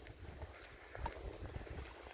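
Footsteps walking on a paved road, a series of soft irregular steps and small clicks, with a low wind rumble on the microphone.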